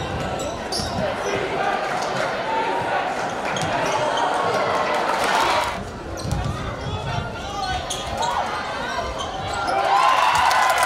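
Basketball dribbled and bouncing on a hardwood gym floor during a game, with voices from the players and crowd calling out over the hall's din.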